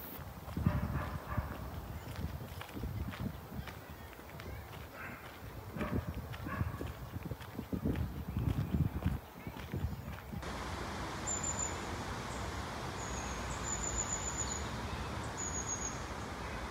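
Footsteps on a gravel path, irregular low thuds of walking. About ten seconds in they give way to a steady outdoor hiss with a few short, high bird chirps.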